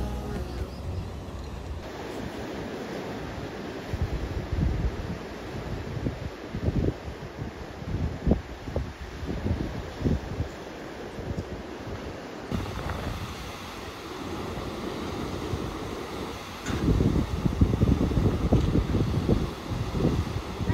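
Ocean surf washing and breaking over sandstone rock ledges at the foot of a sea cliff, with wind buffeting the microphone in irregular gusts. The rumble grows louder near the end.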